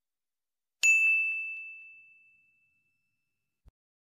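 A single bright bell ding, struck about a second in and ringing out as it fades over about two seconds: the notification-bell sound effect of a subscribe-reminder animation. A faint low thump near the end.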